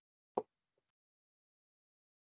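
A single short, sharp click about half a second in, with nothing else to be heard.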